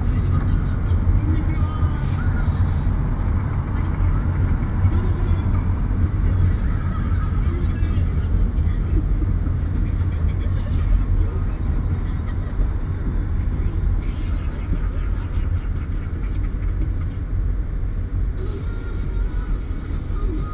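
Steady low rumble of a car's engine and tyres heard from inside the cabin as it moves slowly in a traffic jam.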